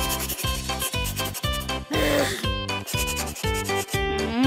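A rhythmic rubbing sound effect of a paintbrush stroking across canvas, about two strokes a second, over light background music.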